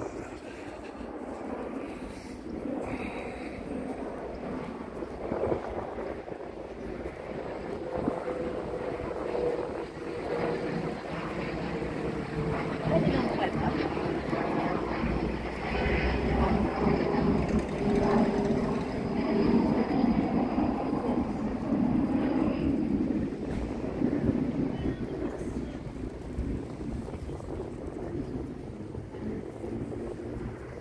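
Street traffic: a motor vehicle's engine running and passing. The sound swells over several seconds to its loudest around the middle, then fades.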